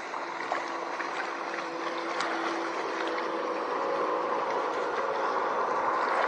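Small motorboat's engine droning as it runs past, growing gradually louder, over a steady noisy wash of water and wind.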